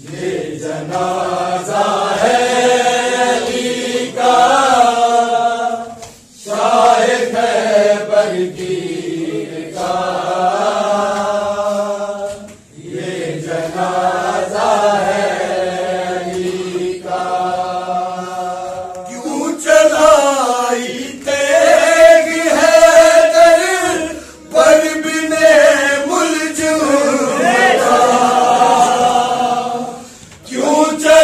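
A group of men chanting a noha, an Urdu mourning lament, together in long phrases with short breaks for breath between them. About two-thirds of the way through, the chanting grows louder and higher in pitch.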